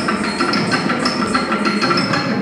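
Kuchipudi dance performance sound: a fast run of rhythmic strikes, about five a second, with metallic jingling from ankle bells and cymbal-like ringing, over the dance's Carnatic music accompaniment.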